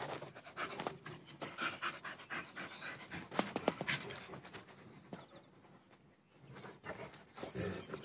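A bull terrier and a hovawart playfighting: dogs panting, with irregular short scuffles and knocks, easing off briefly a little past the middle.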